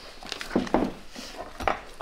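A few light clicks and knocks of small objects being handled on a bench, over low room noise.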